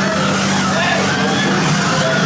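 A loud, steady engine-like drone that cuts off near the end, with voices over it.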